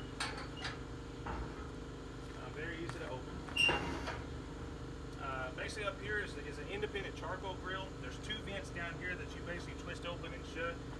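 Heavy quarter-inch steel smoker doors being swung open on their counterweighted hinges, with a few light clicks early and one loud metal clank with a short ring a little under four seconds in.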